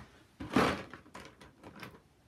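Things being handled while something is fetched. About half a second in there is a short scraping slide, the loudest sound, followed by a few light knocks.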